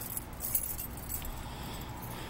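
A bunch of keys jangling in short clinking bursts, mostly in the first second, over a steady low rumble.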